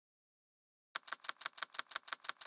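Dead silence for about the first second, then a rapid, even run of sharp clicks, about six a second, like keys being typed: a typing sound effect under an animated logo.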